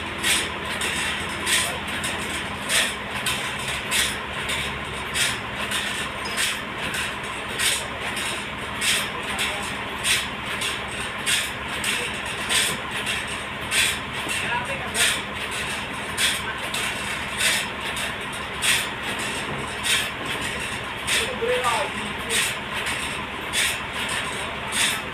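Forklift engine running while it lifts and moves logs. A steady, evenly spaced beat, a little under twice a second, runs over it.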